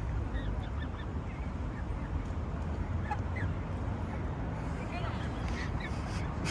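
Canada geese giving short, scattered calls, a few every second or so, over a steady low background rumble.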